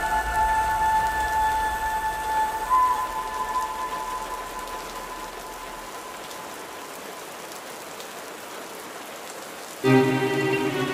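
Steady rain falling. The last held notes of an orchestral piece fade out over the first few seconds, leaving only the rain, and a new piece with bowed strings begins just at the end.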